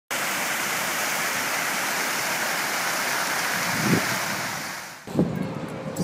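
Fountain water splashing: many jets falling into a stone basin, a steady rush that fades out about five seconds in. A brief thud sounds just before the fade.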